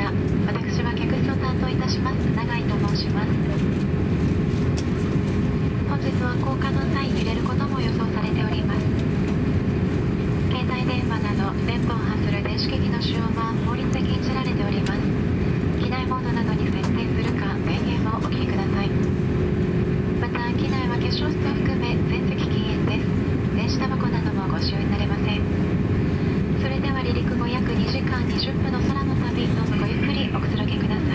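Airbus A350-900 cabin at the gate: a steady rush of ventilation air with a constant hum, under faint overlapping chatter of passengers talking.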